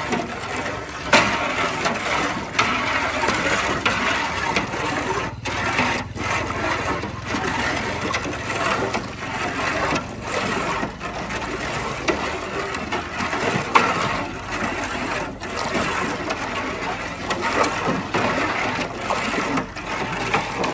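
A long steel rod stirring sugar into water in a large aluminium pot: continuous scraping and swishing, with sharp metallic clinks as the rod knocks against the pot.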